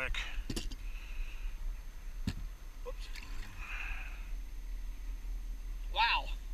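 Steady low rumble of wind on the microphone, with a faint click about half a second in and a sharper click a little over two seconds in from fishing tackle being handled while a hook is baited.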